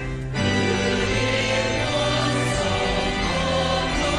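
A church choir of mixed men's and women's voices singing, with low notes held underneath. The voices break off briefly right at the start, then carry on.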